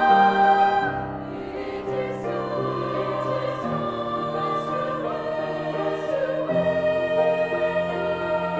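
Treble choir of women's voices singing sustained chords in harmony. A loud held chord gives way about a second in to a softer passage, which swells again near the end.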